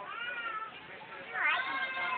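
Two drawn-out, high-pitched calls: one at the start that rises and then sinks, and a second beginning about halfway through that swoops up and holds.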